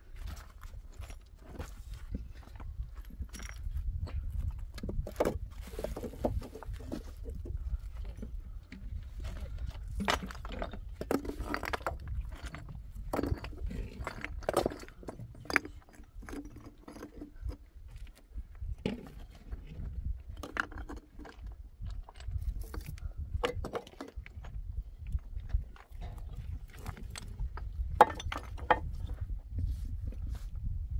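Flat stones knocking and scraping against each other as they are lifted and set by hand into a dry-stone wall: irregular clacks and clunks, with one sharp knock near the end, over a steady low rumble.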